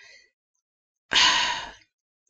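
A woman's sigh: one breathy exhale about a second in, starting suddenly and fading away over about half a second.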